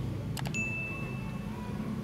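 Subscribe-button animation sound effects: a quick double mouse click, then a short bell ding, one steady high tone lasting about a second. A steady low background rumble runs underneath.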